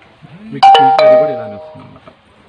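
A two-note ding-dong chime like an electronic doorbell: a higher note and then a lower one, each starting sharply and ringing out, fading over about a second. A voice speaks faintly underneath.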